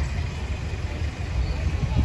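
Street ambience: a steady low rumble of traffic.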